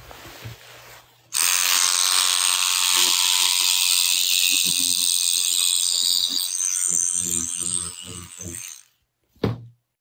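A loud mechanical buzzing, rattling noise that starts suddenly about a second in and cuts off near the end, with irregular knocks running through it.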